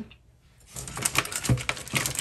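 Long acrylic nails clicking and tapping on plastic wax-melt packaging as it is handled. There is a brief quiet at first, then a quick run of light clicks from a little under a second in, with a soft knock about halfway through.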